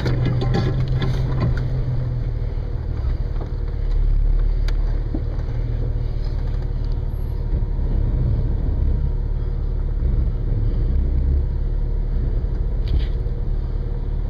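Low, steady engine rumble of an off-road 4x4 crawling up a rocky trail, carried through the hood that the camera is mounted on, swelling and easing as it goes. A single sharp click comes about five seconds in.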